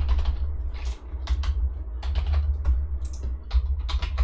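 Typing on a computer keyboard: quick, irregular keystrokes, over a steady low hum.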